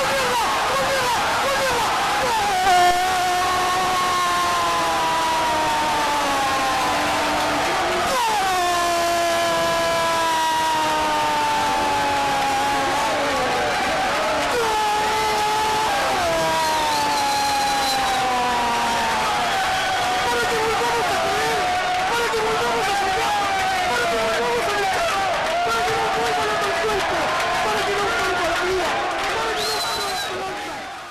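A Spanish-language radio football commentator's long, drawn-out goal cry, "goool", held for many seconds on long notes that slide slowly downward, with a few short breaks to take breath.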